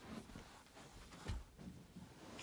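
Faint rustling and a soft low bump about a second in, a baby moving on a crib mattress as he pulls himself up to stand.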